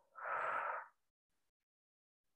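A woman breathing out through her mouth, one breathy exhale of just under a second that cuts off suddenly: a paced out-breath in a breathing exercise.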